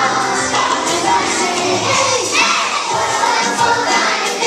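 A large group of young children singing and shouting along loudly over a recorded backing track, with a rising shout about two seconds in.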